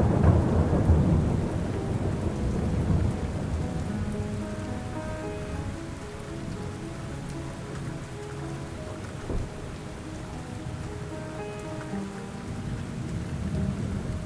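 A rumble of thunder over steady rain, loudest at the start and fading over the first few seconds. Soft sustained music notes come in about four seconds in, under the continuing rain.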